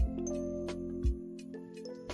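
Background music: soft instrumental with held chords and tinkling high notes, and a deep low beat at the start and again about a second in.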